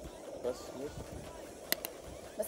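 Cooking utensils giving two sharp clicks close together near the end, over a steady low hum and a brief spoken word.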